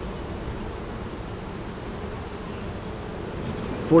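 Honeybees buzzing steadily around an open hive as a frame of bees is held out.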